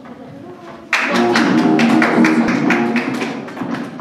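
Acoustic guitar strummed in quick chords, starting abruptly about a second in and easing off near the end.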